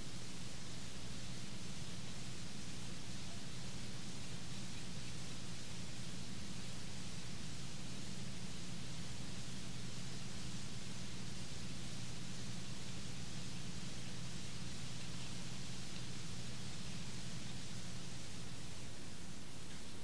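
Steady hiss with an even low hum underneath: the background noise of the recording during a held quiet, with no other sound rising above it.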